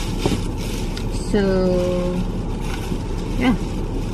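Steady low rumble of a parked car's cabin.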